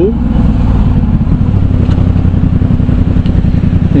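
Yamaha MT-07's 689 cc parallel-twin engine running through an aftermarket Arashi exhaust as the motorcycle rides slowly in traffic, a loud, steady, low pulsing exhaust note.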